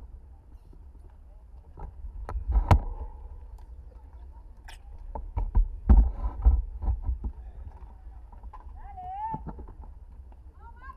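Low rumble of wind on a bicycle-mounted action camera's microphone, with scattered clicks and knocks, loudest about two and a half seconds in and again around six seconds in. A distant voice calls out near the end.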